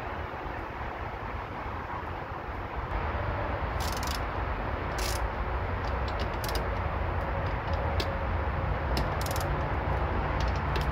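Hand tools working a battery cable terminal clamped in a bench vise: scattered sharp metallic clicks and a few short scraping bursts, starting about four seconds in, over a steady low rumble that grows louder about three seconds in.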